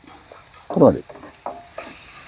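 Food sizzling in hot oil in a pan, the hiss growing louder in the second half. A short falling vocal sound comes just before a second in.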